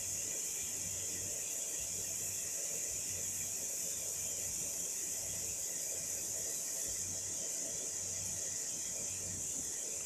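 Desktop 30 W fiber laser marker running while it marks an outline on stainless steel: a steady, even high hiss with a faint low hum underneath, no distinct clicks or changes.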